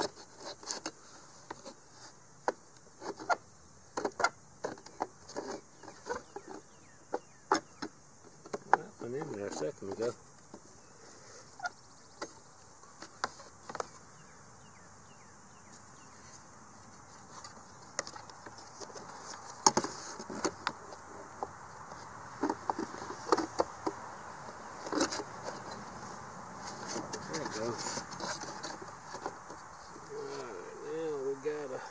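Irregular sharp clicks, taps and knocks of a white plastic RV roof-vent lid being worked onto its aluminium hinge and frame, with a few seconds' lull in the middle.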